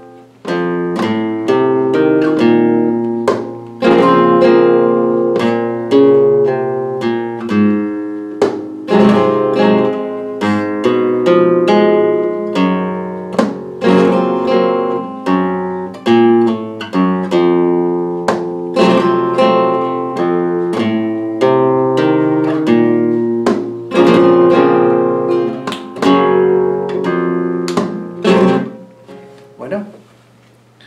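Flamenco guitar playing a fandangos de Huelva falseta in E (por mi), single-note melodic runs broken by sharp strummed chords. The passage dies away just before the end.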